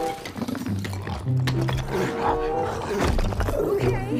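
Movie dinosaur sound effects: a Pachycephalosaurus roaring and growling while smashing through a brick wall, with sharp crashes of rubble, over background music.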